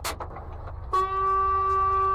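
Truck horn: one steady, held blast that starts about a second in.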